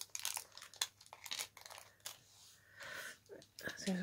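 Packaging crinkling and rattling as a tiny charm is shaken and worked out of its small wrapper. There is a quick run of sharp crackles in the first second and a half, then softer, scattered rustling.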